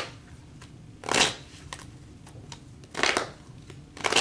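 A deck of tarot cards being shuffled in the hands: two short papery swishes, about a second in and about three seconds in, with faint card clicks between.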